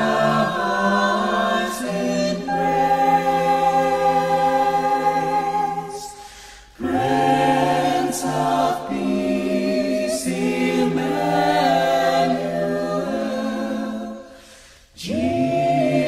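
Small mixed-voice ensemble singing a cappella in close harmony, in long held chords. There is a short break between phrases about six and a half seconds in and another near the end.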